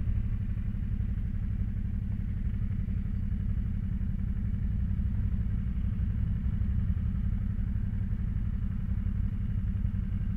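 Motorcycle engine running at low speed, a steady low rumble picked up by a camera mounted on the bike.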